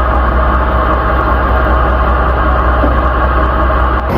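Fishing boat's engine running steadily, a constant low drone heard inside the wheelhouse.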